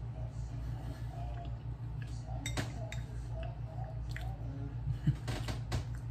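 A metal fork clicking against a plate a few times, with a couple of clicks about halfway through and a cluster near the end, while a mouthful of cheesecake is chewed. A steady low hum runs underneath.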